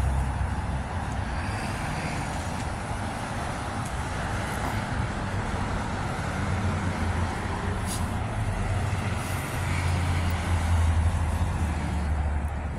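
Road traffic on a city street: a steady low rumble of passing vehicles, swelling slightly near the end.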